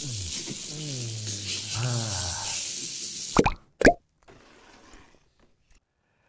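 A man's voice making wordless, wavering sounds over a steady hiss, followed about three and a half seconds in by two sharp pops half a second apart, then near silence.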